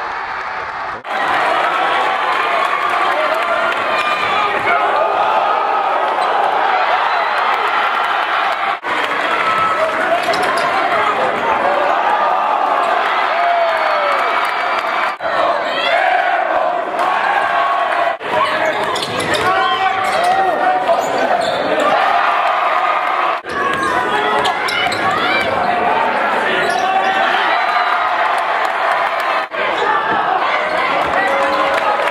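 Basketball game sound in a gym: a crowd of voices shouting and cheering, with a basketball bouncing on the court. The sound drops out abruptly for a moment several times, at about 1, 9, 15, 18, 23 and 29 seconds in.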